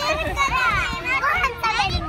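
Several young Japanese children chattering at once, their high voices overlapping.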